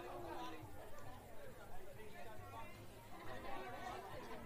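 Faint, indistinct chatter of several spectators talking at once, with no words clearly audible.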